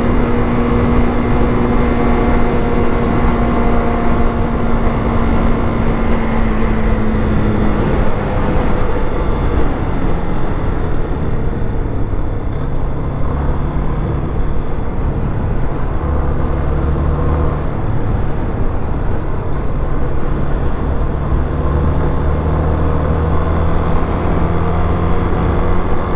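Yamaha Fazer 250's single-cylinder four-stroke engine running under way, with wind noise over the microphone. The engine note sinks gradually over the first several seconds, then runs lower and steady for the rest.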